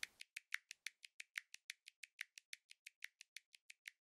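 Faint, evenly spaced ticking, about six sharp ticks a second, running on steadily after the music has stopped.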